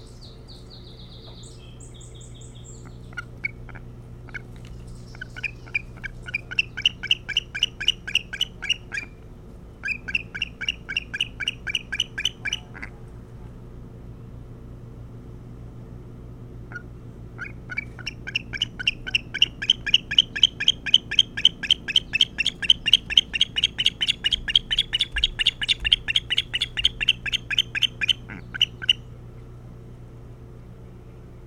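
Osprey calling: rows of short, sharp, high chirps, about four or five a second, in three bouts, the last and longest running about ten seconds. A brief high whistle sounds in the first two seconds.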